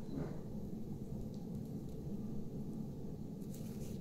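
Quiet room tone: a low, steady background hum with no distinct events.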